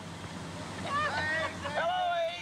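Indistinct voices calling out and talking, with wind noise on the microphone.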